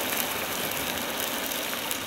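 Potatoes boiling in water pooled on the low side of a tilted non-stick frying pan while thick slices of Spam fry on the dry side, giving a steady bubbling sizzle.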